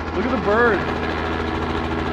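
A helicopter running close by: a steady engine hum with rapid, even rotor beating.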